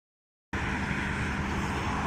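Steady low rumble of outdoor background noise, starting abruptly about half a second in and holding an even level.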